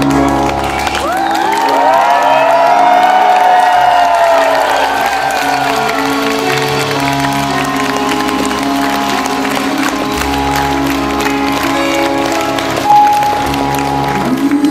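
Electric keyboard and acoustic guitar playing a slow, soft intro while the audience cheers, whistles and applauds, the crowd loudest in the first few seconds and then dying away. A short loud tone rings out near the end.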